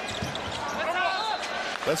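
On-court basketball game sound: sneakers squeaking on the hardwood floor over steady arena crowd noise.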